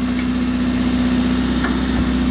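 1995 Rover Mini Cooper 1.3i's 1275 cc A-series four-cylinder engine idling steadily, heard close up with the bonnet open.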